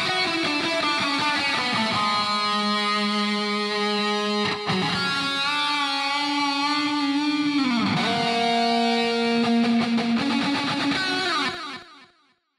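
Electric guitar riff on its own: long, ringing held notes that change every couple of seconds, one sliding down in pitch about eight seconds in. It fades out near the end.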